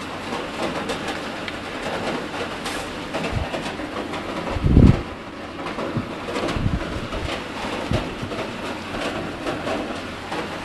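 Handling noise from a hand-held camera over a steady background hiss: a few low knocks, the loudest a short thump about five seconds in.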